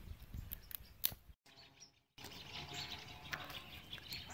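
Faint outdoor evening ambience with birds chirping and a few light clicks. The sound cuts out to silence for under a second near the middle.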